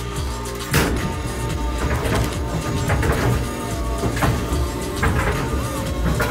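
Background music with a regular beat, and a single sharp thump under a second in.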